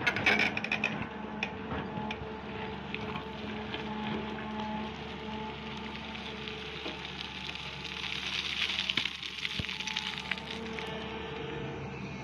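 A Sany SY350 excavator's diesel engine and hydraulics running steadily while its bucket digs into gravelly, stony soil. Stones and earth crackle and rattle against the bucket, heaviest near the start and again past the middle.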